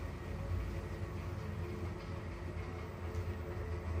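Schindler 3300 elevator car travelling upward between floors, heard from inside the cab: a steady low rumble of the car running in the shaft.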